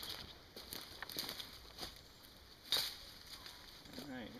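Faint rustling and light crackles of someone stepping through fallen leafy branches, with one sharp crack about two-thirds of the way through.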